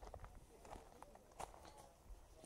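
Faint footsteps of bare feet walking on a wooden plank boardwalk, a few soft steps a second.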